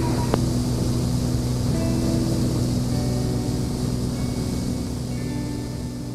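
Steady drone of a Beechcraft A36 Bonanza's piston engine and propeller in the cockpit on final approach, with quiet music mixed in underneath. The sound begins to fade out near the end.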